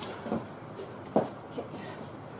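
A woman's voice calls out a single short workout cue about a second in, with otherwise only low room sound.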